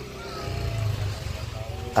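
Faint voices in the background over a low, steady rumble.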